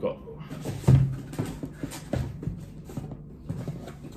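Aluminium beer cans being lifted out of a cardboard box and handled, giving a run of light knocks and clinks, the loudest about a second in.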